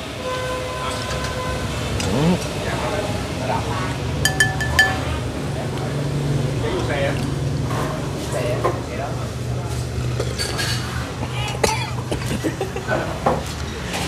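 Spoon and bowls clinking during a meal, with one sharp ringing clink about four seconds in and a few lighter knocks, over a steady low hum.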